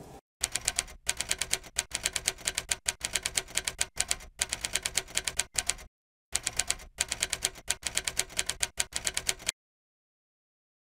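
Typewriter typing sound effect: rapid key clicks in runs with short breaks, pausing for about half a second near the middle and stopping shortly before the end.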